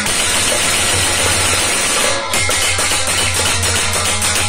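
Harmonium playing a continuous instrumental passage, with a brief dip about two seconds in.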